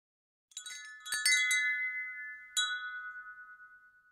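A chime sound effect: a quick run of bright, bell-like strikes with a high shimmer, one more strike about two and a half seconds in, and the ringing dying away.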